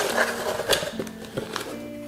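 Background music with steady held notes, over a few short crinkles and clicks of a clear plastic bag as a packaged item is lifted out of a cardboard box.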